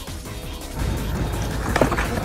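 Skateboard wheels rolling on concrete, growing loud about a second in as the board nears, with a sharp knock near the end as the skater comes off the board.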